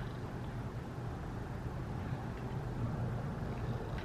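Steady low background hum of room tone, with no distinct events.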